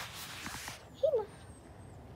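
Fleece fabric brushing over the microphone, then one short voice sound about a second in from a girl playing a pet dog on all fours.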